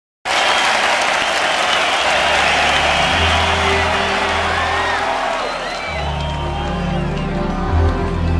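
Large arena crowd applauding and cheering, the applause thinning out over the last few seconds. About three seconds in, sustained low keyboard notes begin, the slow intro of a ballad on electric keyboard.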